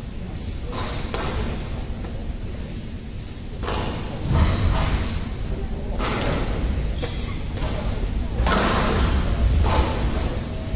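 Squash rally: sharp hits of the ball off rackets and the court walls every one to two and a half seconds, echoing in a large hall over a murmur of crowd voices.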